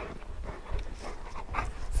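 Two large dogs playing and jostling around a man, with faint, irregular short scuffling sounds of their movement and breath.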